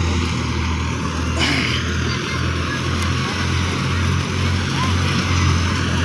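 Wheat thresher running steadily in the field, a continuous low mechanical drone with the rush of the machine working through the crop.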